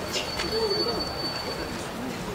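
A dove cooing, a low wavering call about half a second in, with a thin steady high tone through the middle.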